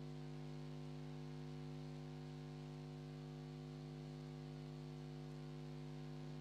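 Steady electrical hum: a low, unchanging drone made of several fixed tones stacked above one another, typical of mains hum in a microphone and amplifier chain.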